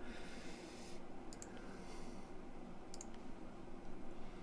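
Computer mouse button clicks, a quick pair about a second in and another pair near three seconds, over a low steady hum.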